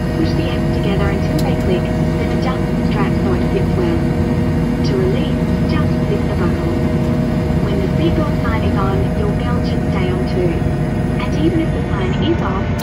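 Jet airliner cabin noise during taxi: a steady drone of engines and air conditioning with constant hum tones, and indistinct voices talking over it.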